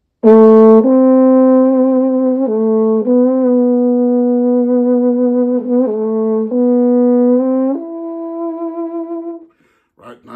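Tenor trombone played through a Humes and Berg Stonelined bucket mute: a slow, connected phrase of about seven long notes, the last one fading out near the end, with the smooth, velvety tone of the classic bucket-mute sound.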